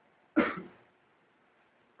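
A single short cough, about a third of a second in, in an otherwise near-silent pause.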